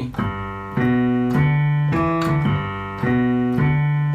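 Piano played in a 1950s rock and roll style: a left-hand walking bass moving step by step under repeated right-hand chords, in a steady rhythm, here on the G chord.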